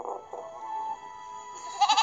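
A cartoon animal bleat sound effect, a wavering call about the start, over light background music from the story app.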